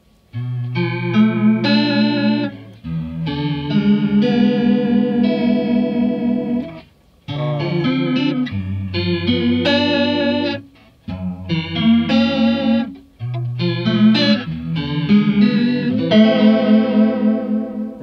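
Electric guitar chords played through an SSaudio Water World analog chorus pedal with mix, depth and rate all at maximum. The chorus gives a deep wavering that stays slow even at full rate, a heavy, watery swell with a hint of reverb. The chords come in several phrases with short breaks between them.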